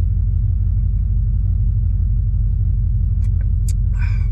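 Steady low rumble of the van's engine idling, heard from inside the cabin. A few short clicks sound near the end.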